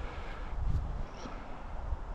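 Low, uneven rumble of wind on the microphone.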